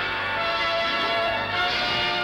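Bells ringing, their tones long and overlapping, with a fresh stroke about three-quarters of the way through.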